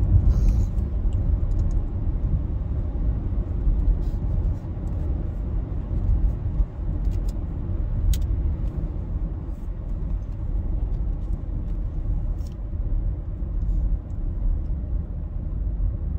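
Steady low road-and-engine rumble inside a moving car's cabin, with a few faint clicks.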